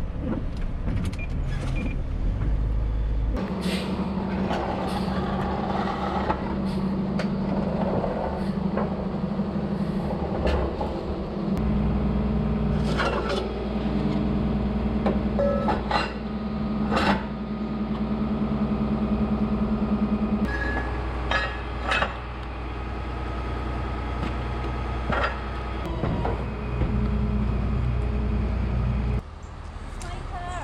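Tow truck engine running steadily, its pitch and level shifting abruptly several times, with scattered metal clanks and knocks as the wheel-lift gear is set under a car's front wheel.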